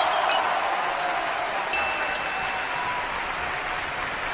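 The tail of a glass-shatter sound effect: a loud hiss that fades slowly, with a few bright glass tinkles about two seconds in.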